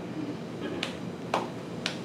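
Sparse applause from a few listeners: three sharp strokes about half a second apart.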